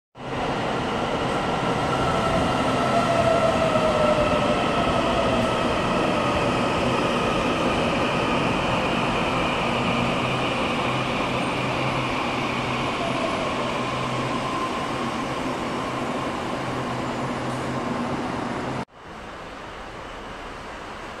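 Taiwan Railways EMU800 electric commuter train moving along the station platform: rail rumble with electric whine tones that slide slowly in pitch, loudest a few seconds in and then slowly fading. Just before the end the sound cuts off abruptly to quieter, steady background noise.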